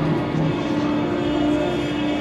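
Electronic music from a VCV Rack software modular synthesizer: a steady droning chord, with short low notes pulsing underneath about every half second.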